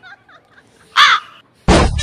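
A crow caws once about halfway through, a single short call falling in pitch. Near the end a loud burst of music or a sound effect cuts in suddenly.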